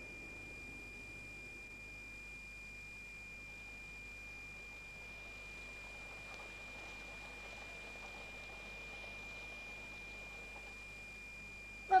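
Faint steady hiss from a 1970s radio-play recording, with a thin, steady high-pitched whine running through it.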